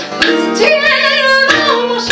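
A woman singing held notes with vibrato over acoustic guitar accompaniment, with chords strummed about a quarter second in and again near the end.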